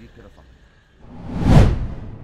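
A whoosh sound effect for a logo transition, swelling to a peak about one and a half seconds in and then fading.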